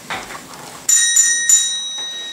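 A small bell struck three times in quick succession, each ring carrying on and fading, rung as the doorbell of a house to announce a visitor.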